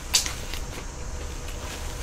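A paper napkin crinkles once, briefly and sharply, just after the start as it is lifted to the mouth. After that there is only a low steady hum.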